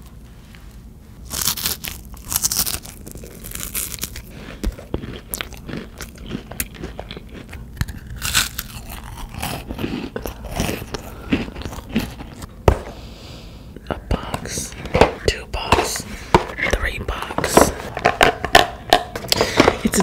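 Chocolate-coated peanut butter wafer bars being snapped and crunched right at a microphone: a string of sharp, crisp cracks, loudest in the first few seconds.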